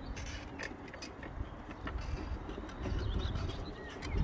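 Outdoor ambience: faint bird calls over a steady low rumble that grows louder about three seconds in.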